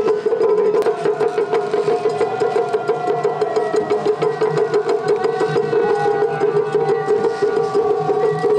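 Japanese festival float music (hayashi): fast, continuous taiko drum strokes over a steady held tone.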